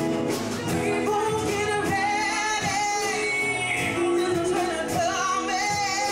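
Live band playing a slow song: a woman sings the lead melody with long held notes over electric guitar, keyboard, bass and drums.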